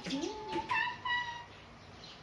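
A young pet macaque giving two short, high-pitched squeaky calls in the first second, the second one clearer and slightly falling in pitch.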